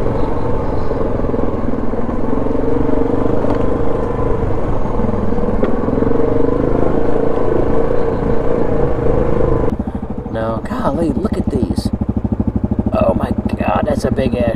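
Yamaha 700 ATV's single-cylinder engine running under way along a dirt trail. About ten seconds in, the sound cuts abruptly to a quieter, even idle.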